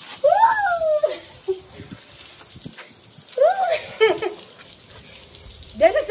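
Water spraying steadily from a homemade PVC pipe shower head drilled with many fine holes. A woman's voice cries out twice in the spray, once near the start and again about three and a half seconds in.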